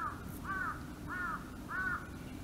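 A crow cawing four times in a steady run, about half a second apart, each caw rising and then falling in pitch.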